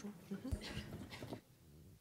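Faint voice sounds with a low thump about half a second in, then quiet room tone from about two-thirds of the way through.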